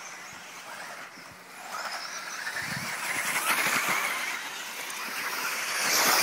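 1:10 scale 4WD off-road RC buggies racing on a dirt track: the whine of their electric motors and the hiss of tyres on dirt, growing louder as the cars come close about three seconds in.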